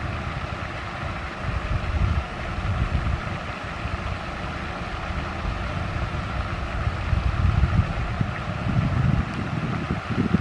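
Wind buffeting the microphone in irregular gusts of low rumble, over a steady background hum.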